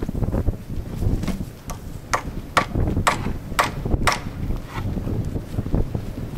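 A claw hammer driving a steel nail into a dry pine board, about six sharp blows roughly two a second, with low wind rumble on the microphone.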